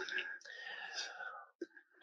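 A faint breathy, whispery sound lasting about a second and a half, like a person drawing breath before speaking, then near silence.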